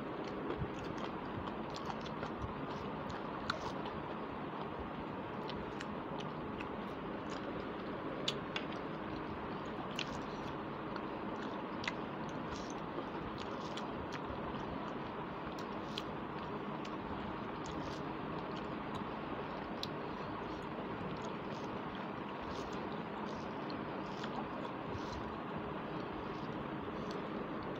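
A person chewing and eating rice and curry by hand, close to a clip-on microphone: scattered small clicks and mouth sounds at irregular moments over a steady background hiss.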